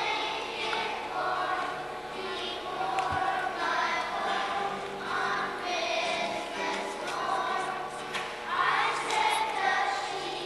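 Children's choir singing together.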